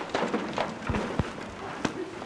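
Footsteps of people moving about, in a noisy haze, with two low thumps around the middle and a sharp knock near the end.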